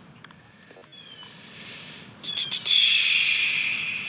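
A high hiss that swells from about a second in and fades, then a few sharp clicks, then a steadier hiss through the last second and a half.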